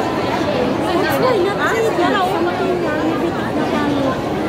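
Crowd chatter: several people talking at once, with no single voice clear.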